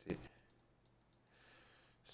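A quick run of faint computer mouse clicks in the first second, as the 'Move Down' button is pressed repeatedly.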